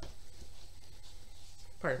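Faint rustling and rubbing of a piece of linen cross-stitch fabric being handled and lifted, with a word spoken near the end.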